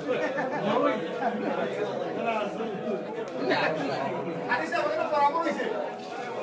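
Several people talking at once in a hall, overlapping chatter, with a steady hum running underneath.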